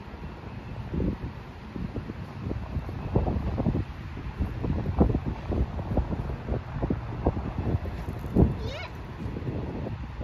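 Wind buffeting the microphone in uneven gusts, with a brief wavering high-pitched call about eight and a half seconds in.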